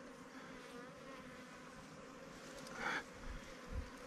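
Faint, steady buzzing of a colony of wild African honey bees whose ground nest is being dug open for its honeycomb: the disturbed bees are agitated and stinging. A short rustle comes about three seconds in.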